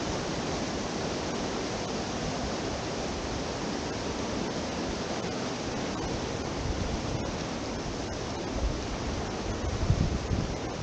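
Rushing white water of a mountain creek cascading over rocks, a steady rush with no change. A few low rumbles on the microphone near the end.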